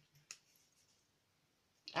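One light click about a third of a second in, then quiet room tone until a voice begins near the end.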